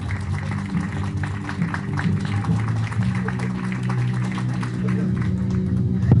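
A small audience applauding, a spatter of hand claps, with music playing in the background in held low notes.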